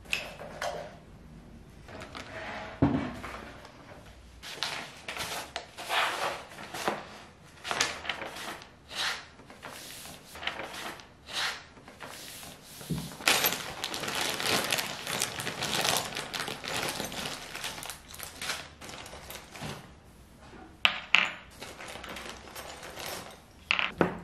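Handling noise from flat-pack furniture being unpacked: cardboard packaging scraping and rustling, chipboard panels knocking and sliding, and a paper instruction sheet rustling, in a run of short irregular bursts. There is one heavier knock about three seconds in and a longer spell of rustling a little past the middle.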